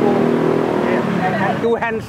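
A motor vehicle engine running steadily close by, with people's voices talking over it, clearest near the end.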